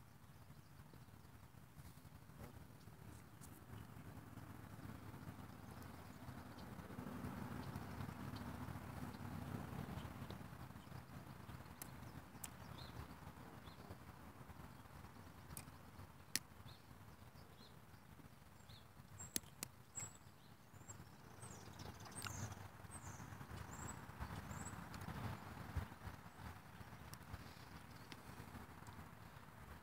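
Faint outdoor pond ambience: a low rumble that swells for a while near the start and again near the end, a few sharp clicks, and a short run of faint high chirps about two-thirds of the way through.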